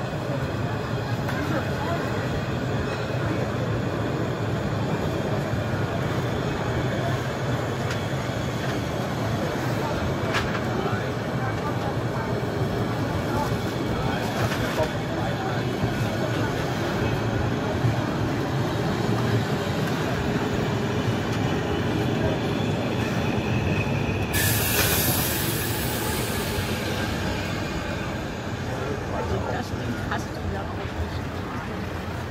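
Narrow-gauge passenger coaches of the Molli steam railway rolling past at close range, a steady rumble of wheels on the rails. About 24 seconds in, a loud, sharp hiss lasts for about two seconds.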